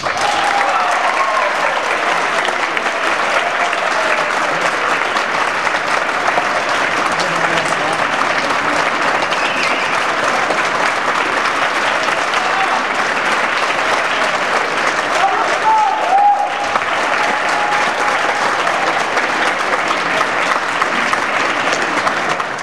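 Audience applauding steadily right after the band stops playing, with a few voices calling out over the clapping.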